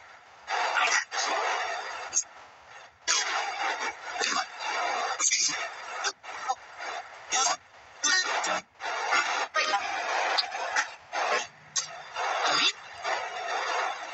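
Spirit box (ghost box) sweeping through radio stations: choppy bursts of static and broken snatches of radio sound, cutting in and out every fraction of a second.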